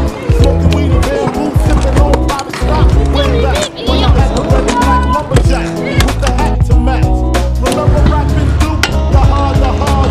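Hip-hop backing track with a heavy bass beat and rapped vocals.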